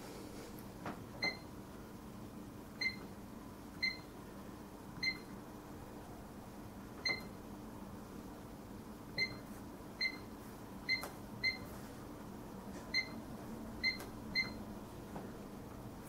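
Sam4S NR-510F cash register giving a short, high beep for each key pressed as a product name is typed on its flat alpha keyboard: about a dozen beeps at irregular intervals, roughly a second apart.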